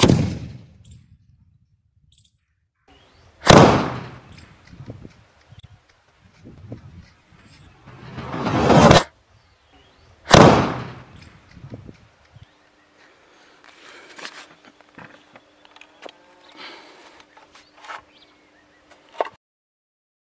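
Sutli bomb firecracker explosions: a sharp bang, another about three and a half seconds in, a rising rush that cuts off abruptly around nine seconds, and one more bang just after ten seconds. After that only a faint steady hum with small scattered sounds.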